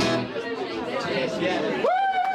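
Two acoustic guitars ending a blues song, the last chord cutting off and fading under crowd chatter. Near the end a single voice calls out, rising, holding and falling in pitch.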